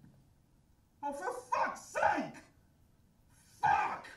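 A dog barking, played back over cinema speakers: three quick barks in a row, then one more near the end.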